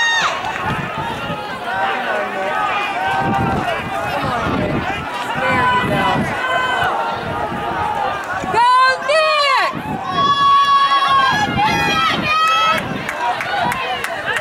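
Several people close by talking and calling out over one another, with one loud rising-and-falling shout about nine seconds in.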